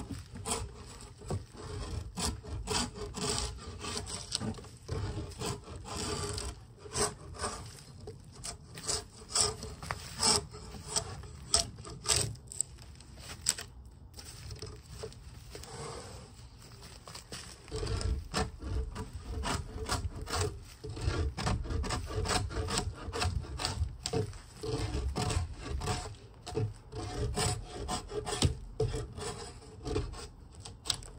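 Repeated rough scraping strokes of a drawknife stripping bark from a log, with a lull about halfway through before the strokes resume. The bark is tough to peel in late fall, so each stroke takes hard effort.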